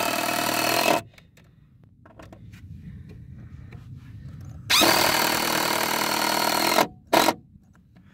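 A cordless impact driver driving long deck screws into wooden decking boards. It makes two loud, steady runs of about two seconds each; the second starts with a rising whine. A short final burst near the end seats the screw.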